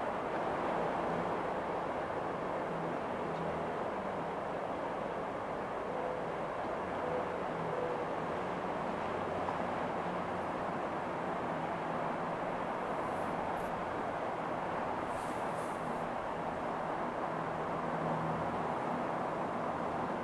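Quiet, steady outdoor background hush on a golf course, an even noise with no distinct event.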